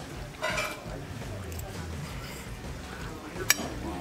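Eating at the table: a fork and spoon stirring and scraping through noodles in large glass bowls, with a short slurp-like rush about half a second in. A single sharp clink of a utensil against a glass bowl comes near the end.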